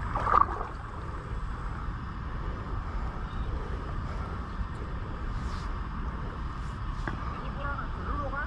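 Steady rushing outdoor noise of wind on the microphone and moving river water, with one brief louder sound about a third of a second in.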